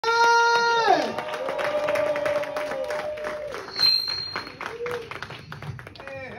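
Audience clapping over music or held vocal tones. The first tone drops sharply in pitch about a second in.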